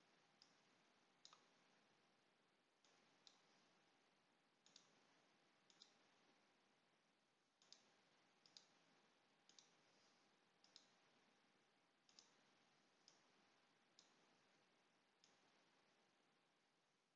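Faint computer mouse clicks at irregular spacing, roughly one a second, over near silence.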